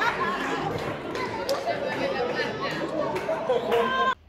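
Excited chatter of several people talking over one another, with a few short sharp clicks.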